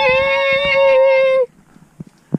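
A young voice holding one long, high, sung note for about a second and a half, then cutting off abruptly.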